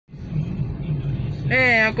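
A car driving, heard from inside the cabin: a steady low engine and road hum. A man's voice starts about three-quarters of the way in.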